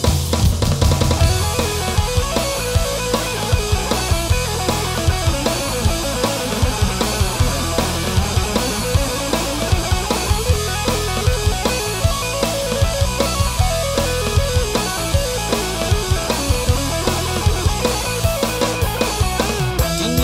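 Upbeat pop-rock band music from a Burmese Thingyan festival song: electric guitars and bass over a steady, driving drum-kit beat, with no singing in this passage.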